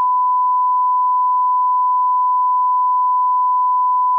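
Colour-bars test tone: a single pure, steady beep held at one pitch without a break, loud and unchanging.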